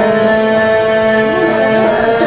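Qawwali music: harmonium playing a steady held chord, with a singer's voice wavering over it in sung ornaments from a little under a second in.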